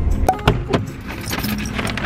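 Light jingling rattle of small hard objects carried while walking, with a few sharp clicks in the first second and a busier run of jingles in the second half, over a low steady rumble.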